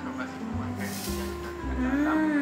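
Background music with steady held notes; about a second in, a brief hiss of granulated sugar poured from a bowl into a blender jar.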